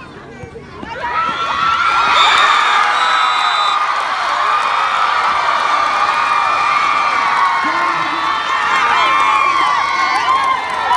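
Crowd of football spectators bursting into loud cheering and high-pitched screaming about a second in, then keeping it up.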